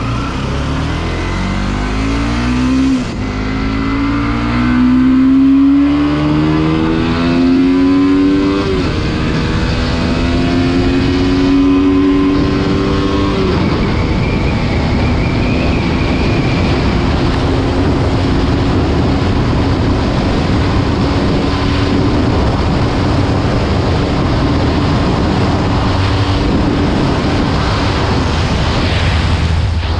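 Bajaj Pulsar NS200's single-cylinder engine at full throttle, its note climbing and dropping sharply at three upshifts in the first half, during a top-speed run. It then holds a steady high note at speed, with wind rushing over the microphone.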